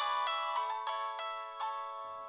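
Mobile phone ringing for an incoming call: an electronic ringtone melody of bright chiming notes, stepping to a new note about three times a second.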